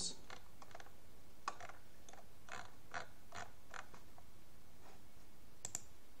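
Faint, irregularly spaced soft clicks over a steady hiss: computer mouse or trackpad clicks and scrolling, about ten in all, bunched over the first four seconds with a pair near the end.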